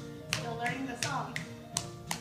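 Sharp hand claps and palm slaps of a two-person clapping game, about five in two seconds, over a children's song with singing played from a TV.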